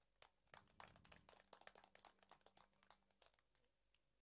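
Near silence, with faint irregular clicks through most of it and a low hum that stops about three seconds in.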